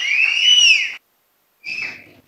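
A loud, long whistle from the audience that rises and falls in pitch, then breaks off abruptly about a second in. A shorter whistle follows near the end.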